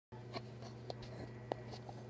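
Handling noise on the recording device: a few faint taps and clicks, the loudest about one and a half seconds in, over a steady low hum.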